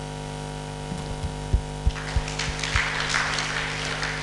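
Steady electrical mains hum from the microphone and PA system, with a few soft low thumps in the first half and an audience breaking into applause from about halfway.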